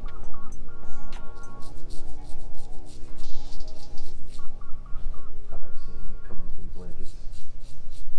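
Background music: a melody that moves in held steps over a steady bass line.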